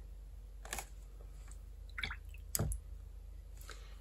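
Faint small clicks and soft taps from a watercolour brush working on paper and being put down on the table, the loudest tap about two and a half seconds in.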